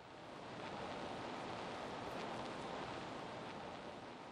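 A faint, steady hiss of even noise with no tone or rhythm, swelling in over the first second and then holding.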